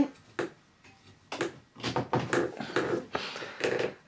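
Handling noise from a plastic mobile phone and its charger connector: a string of short, irregular clicks and knocks as the charger plug is fitted and the handset is handled.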